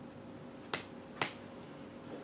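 Two sharp clicks about half a second apart from keys being pressed on a laptop keyboard.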